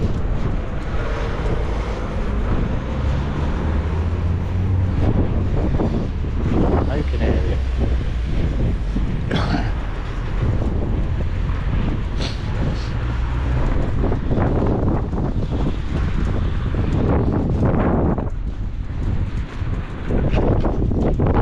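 Wind buffeting the camera microphone as a steady low rumble, with road traffic in the background.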